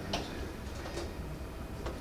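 A few light clicks from a laptop being operated, about a second apart, over a steady low room hum.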